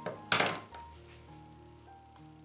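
Scissors snipping through bulky acrylic yarn: one short, sharp crunch about a third of a second in. Soft background music plays under it.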